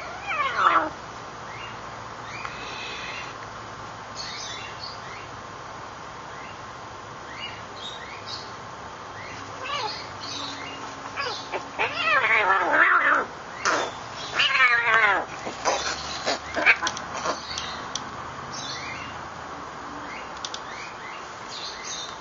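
Kitten meowing: one falling cry about half a second in, then a run of long, drawn-out cries between about ten and seventeen seconds in.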